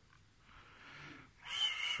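Meade LX90 telescope's drive motors whining steadily as the go-to mount starts slewing automatically toward its alignment star, starting about one and a half seconds in.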